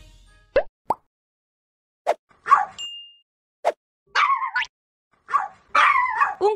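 Edited cartoon-style pop sound effects: about five short, sharp plops spread over the first four seconds, with a brief high beep around three seconds in. Short, pitched yelp-like sounds follow in the last two seconds.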